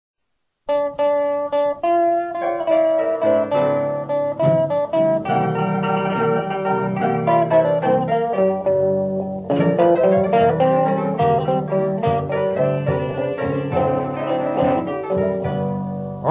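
Instrumental opening of a Chicago blues 78 rpm record: guitar with a small combo, starting just under a second in.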